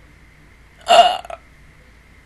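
A single short vocal sound from a woman, about half a second long, about a second in.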